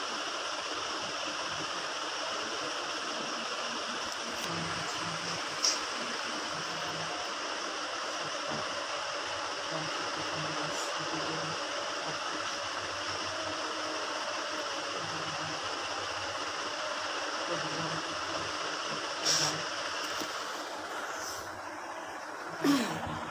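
Steady rushing hiss of an electric fan's air blowing across a phone microphone, with a faint uneven low thrum and two brief clicks.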